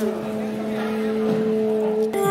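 South Indian temple wind music (mangala vadhyam) holding a steady drone on one pitch, with faint wavering sounds above it.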